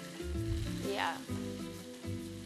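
Chicken stock poured from a jug into a hot pan of chicken, zucchini and rice, sizzling as it hits the pan, with a brief louder splash about a second in. Soft background music plays underneath.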